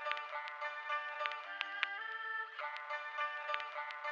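Instrumental beat from an Akai MPC 2000 XL sampler: a looped, pitched melodic sample over regular crisp ticks. About two seconds in the loop breaks into a short held chord, then picks up again.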